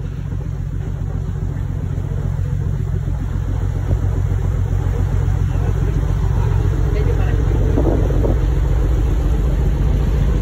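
Motor yacht's engine running steadily under way, with wind and water noise, slowly getting louder.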